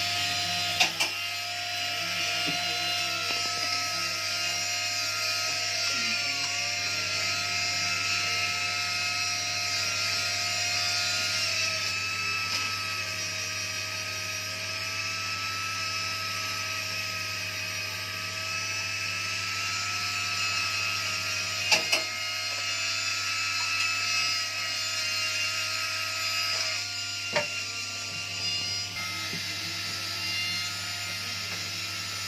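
Handheld rotary tool with a small cutter, running steadily while cutting a design into a gold bead: a steady whine that wavers slightly in pitch as the cutter bears on the metal, over a grinding hiss. A few sharp clicks stand out: about a second in, two close together past the middle, and one near the end.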